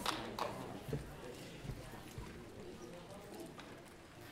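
The last scattered claps of applause die away, followed by a few soft footsteps and knocks on the stage over a low audience murmur.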